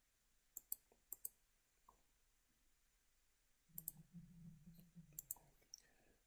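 Computer mouse clicks in near silence: a few short sharp clicks, in quick pairs, about half a second to a second and a quarter in, then a faint low sound with a few more clicks near the end.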